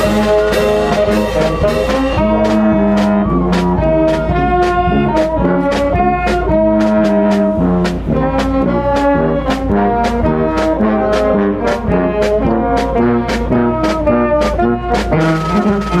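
Brass band playing: sousaphone, trombones and trumpets over bass and snare drums keeping a steady beat of about two strokes a second.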